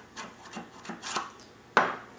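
Metal ramming rod scraping inside a 3/4-inch PVC rocket motor casing in several short strokes, pushing a masking-tape O-ring down to the bottom, then a louder knock near the end.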